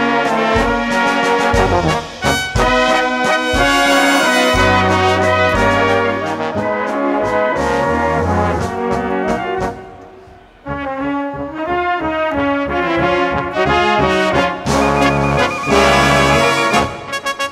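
Large brass band playing live: flugelhorns and trumpets, tenor horns and baritones, trombones, tubas and clarinets over a steady drum beat. About ten seconds in the music thins out and quiets for under a second, then the full band comes back in.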